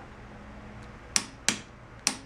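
Two sharp clicks about a second in, a third of a second apart: a click-type torque wrench signalling that the steering damper bracket bolt has reached its set torque.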